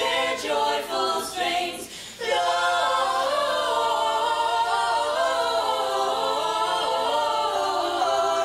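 A small group of voices singing a cappella in harmony: a few short sung notes, a brief break about two seconds in, then long held chords.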